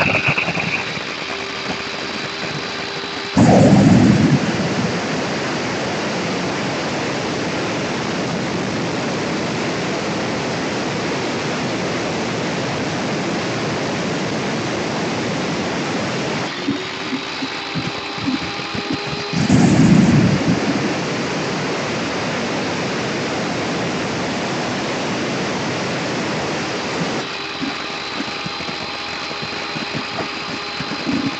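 Electric tile wet saw running and cutting through an Accrington brick slab: a steady, loud grinding hiss of blade on wet brick. It surges louder about 3.5 s in and again near 20 s in as the blade bites into the brick. In the gaps between cuts the motor's steady whine shows through.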